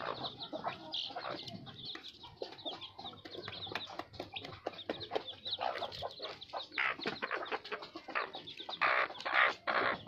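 Ten-day-old desi chicks peeping constantly in rapid high chirps, with the mother hen clucking among them and a few louder bursts in the last few seconds.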